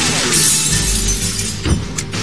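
A film explosion effect: a sudden blast with glass shattering and debris, a low rumble under the hiss for about the first second, and a second thud near the end. Dramatic score music runs beneath it.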